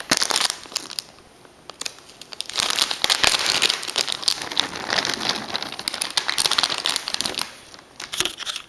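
Plastic soft-bait packet crinkling as it is opened and handled, in two stretches with a quieter lull from about one to two and a half seconds in.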